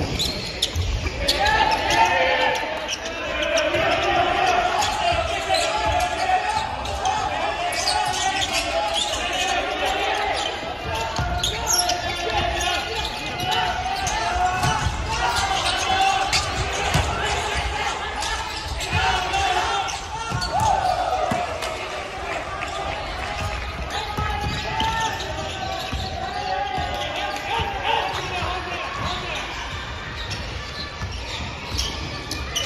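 Basketball game in a gym: the ball bouncing on the hardwood court amid short knocks and impacts, with players and the bench calling out throughout.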